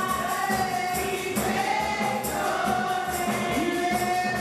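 Gospel praise singing by a group of women on microphones, holding long notes over instrumental accompaniment with a steady beat.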